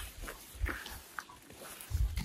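Faint footsteps on a grassy dirt path: a few soft, uneven thuds with light ticks.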